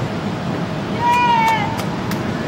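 A single short, high-pitched call about a second in, lasting under a second and falling slightly in pitch, over a steady low background rumble, followed by a few faint clicks.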